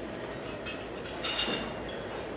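Banquet-room background of a seated crowd, with glasses and cutlery clinking now and then, most clearly about one and a half seconds in.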